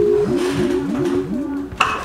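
Video-call app sound effect: a steady tone cuts off just after the start, followed by a quick run of about six short rising blips as the call connects.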